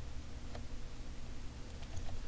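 Quiet room tone with a steady low hum and hiss, broken by a faint single mouse click about half a second in.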